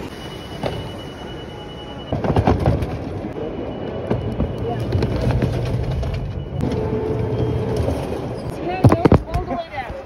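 Plastic airport security bins knocking and rolling on a roller conveyor, with clusters of knocks about two seconds in and again near the end. A low machine hum runs under it in the middle, and people talk in the background.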